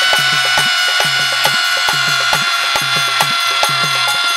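Bhajan music: a male singer holds one long high note over a harmonium, while a dholak keeps up a quick, even rhythm of strikes.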